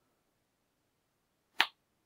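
A single sharp computer-mouse click about one and a half seconds in, against near silence.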